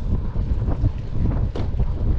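Wind buffeting the microphone of a handlebar-mounted action camera on a moving bicycle, a steady low rumble.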